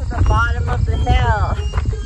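A woman's voice exclaiming with strongly rising and falling pitch, over a loud, uneven low rumble of wind on the microphone.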